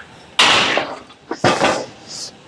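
Metal clanking of a gym leg-press machine as its weight is set down at the end of a set: one sharp, loud clank about half a second in, then a smaller double clank about a second later.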